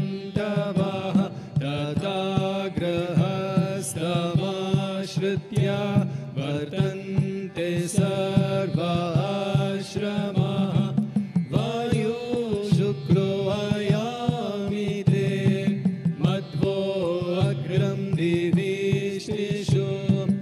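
Sanskrit mantra sung in a melodic chant over a steady low drone.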